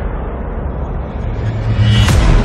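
Cinematic sound effect for an animated logo: a deep rumble that thins out, then swells over the last second as it builds toward a hit.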